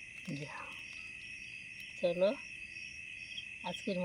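A steady, high-pitched chorus of crickets at night, with a person's voice briefly breaking in a couple of times.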